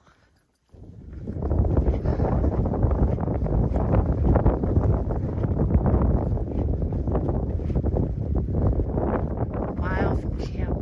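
Strong gusty wind buffeting the microphone, starting suddenly about a second in and staying loud, with a deep rumble.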